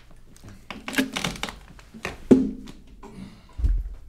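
Handling noise in a small room as the acoustic guitar is set down after the song's final chord: scattered knocks and clicks, a louder knock a little past two seconds, and low thuds near the end.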